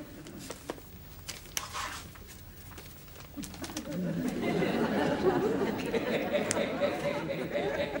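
A few light clicks and knocks, then from about three and a half seconds in a studio audience laughing, the laughter building towards the end.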